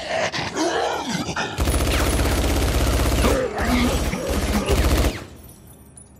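A werewolf-like creature snarling, then rapid automatic rifle fire for about three and a half seconds, broken by two short pauses, with the creature's cries heard over the shots; the firing stops about five seconds in.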